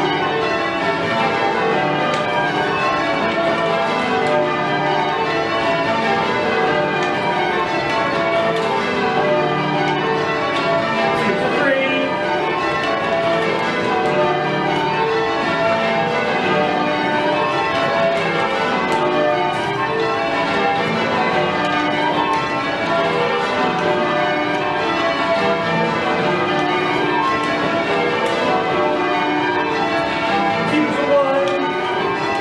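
A ring of twelve Whitechapel church bells rung full circle in call changes, a steady, unbroken sequence of overlapping bell strokes heard from the ringing chamber below.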